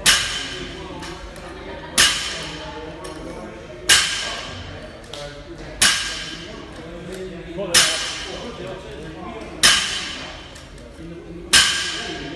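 A loaded barbell with bumper plates and clips hits the rubber gym floor about once every two seconds, seven times. Each impact is a sharp thud with a brief metallic ring and rattle from the plates and collars.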